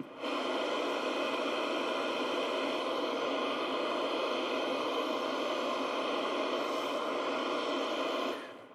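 Sharper Image sound soother playing its synthesized water sound: a steady, even hiss with no bass, starting as it is switched on.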